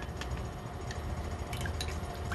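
Chopsticks stirring a runny egg mixture in a glass bowl: soft liquid sloshing with a few light, scattered clicks of the chopsticks against the glass.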